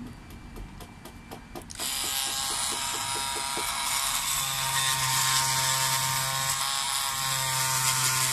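Bosch oscillating multi-tool with a Starlock blade switching on about two seconds in, then buzzing steadily as its blade cuts into a white block.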